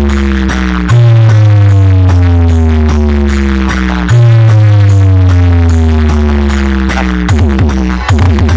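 Electronic bass track blasting from a large DJ speaker-box wall, very loud. Deep held bass notes slide slowly down in pitch, each restarting with a jolt about every three seconds, over a fast steady ticking beat. A little past seven seconds in, it breaks into a chopped, stuttering rhythm.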